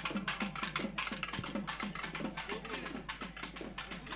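Fast, steady drumming on magudam frame drums, about six strokes a second, played quietly with faint voices underneath.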